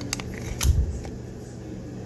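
SCCY CPX-2 9mm pistol's slide being racked by hand as a function check after reassembly: two light metal clicks at the start, then a sharper clack with a dull thump about half a second in.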